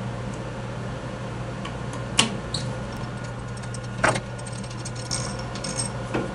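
An Allen key loosening the mounting screws of a gang-tool post on a Sherline mini lathe: two sharp metallic clicks about two and four seconds in, then light metal clinking near the end, over a steady low hum.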